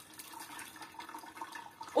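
Curds and whey being poured from a stainless steel pot into a cloth-lined sieve: a quiet splashing and trickling of liquid.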